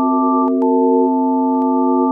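A steady chord of several pure electronic sine tones held without change, one of the middle tones dropping out about a second in, with two faint clicks.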